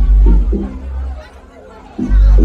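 Club dance music over the nightclub sound system with a heavy bass line and a few short pitched hits; about a second in the bass cuts out, leaving a lull with crowd chatter, and the beat drops back in at the end.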